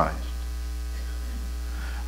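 Steady electrical mains hum with a fainter buzz above it, running unchanged through the sound system's microphone feed.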